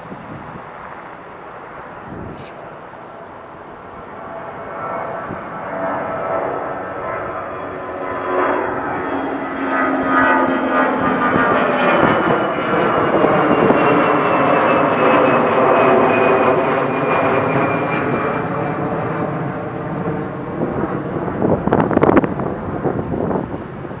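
Twin-engine Airbus A320-family jet airliner climbing out after takeoff and passing overhead. The engine noise builds over several seconds, peaks in the middle with whining tones that slide slowly downward as it goes by, then fades away.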